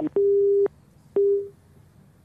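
Telephone busy tone after a phone line drops: two steady beeps of about half a second each, half a second apart, each starting and ending with a click. It is the sign that the call has been cut off.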